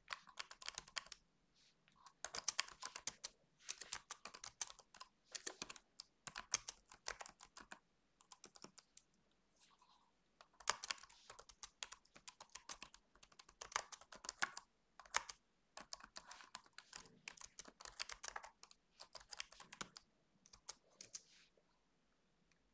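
Typing on a desktop computer keyboard: quick runs of keystrokes broken by short pauses.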